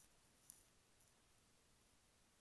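Near silence: faint room tone, with one short, faint click about half a second in.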